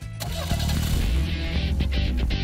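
Radio show theme jingle starting up: music with a car engine starting and running mixed in, swelling over the first half second and then steady.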